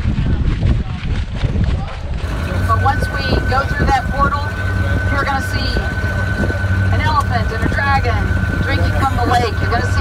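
Tour boat engine running steadily, a low hum with a steady high whine above it, under the chatter of passengers on an open deck. The first couple of seconds, before it comes in, are wind rumble on the microphone.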